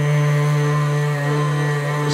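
Electric SurfPrep orbital sander running with a steady, even hum as its pad works the painted plastic mirror cover, feathering out a paint chip.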